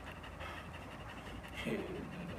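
A German Shepherd-type dog panting quietly with its mouth open.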